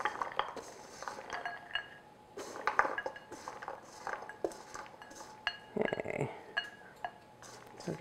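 A spatula scraping and knocking against a stainless steel mixing bowl as frozen berries are pushed out and clatter into a baking dish: a run of irregular clinks and scrapes.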